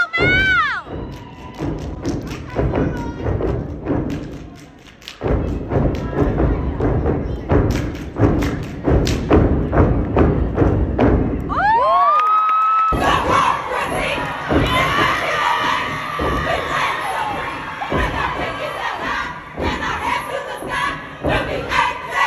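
Step team stepping on a stage: rhythmic, hard-hitting stomps and claps. About thirteen seconds in, a crowd cheers and screams loudly and keeps it up.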